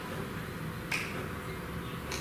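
A single short, sharp click a little under a second in, over a steady low room hum.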